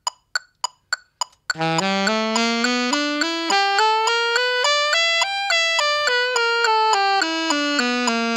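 Metronome clicks counting in at an even eighth-note pulse, then, about a second and a half in, an alto saxophone plays the C# minor blues scale in eighth notes at 105 bpm, climbing two octaves and coming back down as the click continues beneath it.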